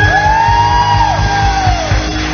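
Live worship band with keyboard, acoustic guitar and bass over a steady low beat, a woman's voice holding long sung notes that fall away near the end while the band plays on.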